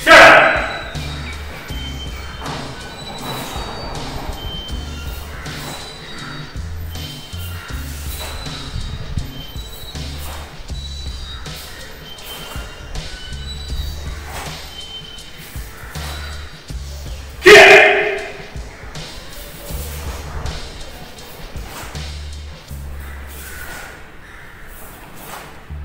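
A karate kata performed solo: sharp short sounds of movement through most of it, a loud shout at the very start, and a loud kiai shout about seventeen and a half seconds in.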